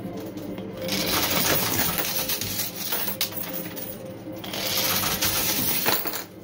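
Quarters clattering and chinking against each other as a coin pusher machine's sliding shelf shoves them along and over the edge, in two spells of a couple of seconds each, over a steady low hum.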